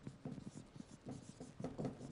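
Marker pen writing on a whiteboard: a quick, uneven run of short, faint strokes.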